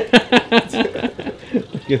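A man laughing: a quick run of short ha-ha bursts in the first second, then tailing off into looser chuckles.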